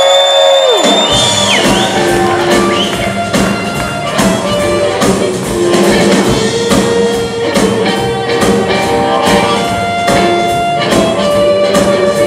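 Live blues band kicks in about a second in: electric guitar, upright bass and drums playing a steady beat, with harmonica.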